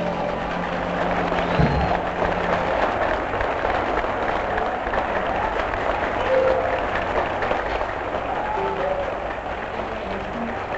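Audience applauding steadily at the end of a song, easing off slightly near the end.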